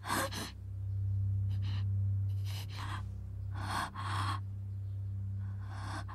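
A frightened woman's sharp gasps and shaky breaths, about five in all, over a steady low drone.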